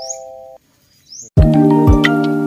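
Intro sound effects and music: a held three-note chime fades and stops about a third of the way in, a short rising shimmer follows, then a music track comes in with a deep hit and sustained notes.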